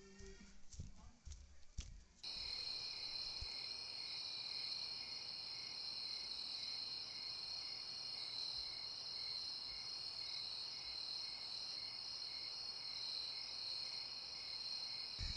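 A few soft thuds, then, starting abruptly about two seconds in, a steady night chorus of crickets trilling together at a high pitch, one of them pulsing about twice a second.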